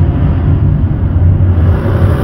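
Steady engine and road rumble heard inside the cabin of a manual Nissan sedan driving through traffic, with a faint hiss coming in near the end.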